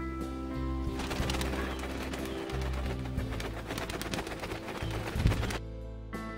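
Soft instrumental background music. From about a second in, pigeons make a dense, rapid clatter over it, which cuts off abruptly shortly before the end.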